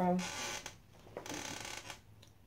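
Rustling and creaking handling noise in two short spells, from movement at the desk.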